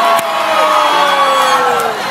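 Large crowd of young people cheering and whooping, with one long drawn-out shout slowly falling in pitch, in reaction to a mind-reading prediction revealed as correct.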